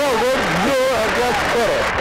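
Excited voices over a short burst of studio music, the reaction to winning the grand prize.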